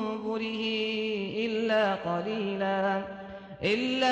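Male voice chanting Quranic recitation in Arabic in the melodic tajweed style, with long held, ornamented notes. There is a short pause for breath about three and a half seconds in, then the chant resumes.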